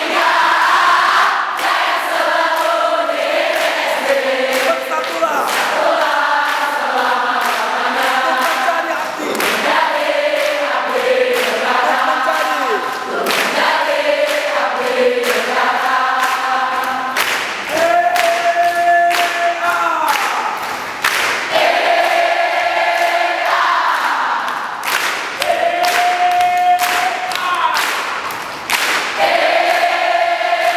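A large group, mostly women's voices, singing a cheer chant together and clapping their hands along with it. The tune holds a couple of long notes past the middle.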